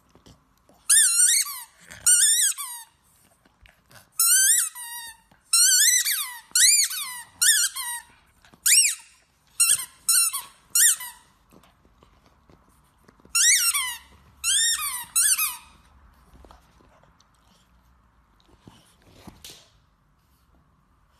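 A squeaky dog toy squeezed repeatedly in a pug's mouth: a long run of high squeaks in quick bursts, each rising then falling in pitch, stopping about two-thirds of the way in.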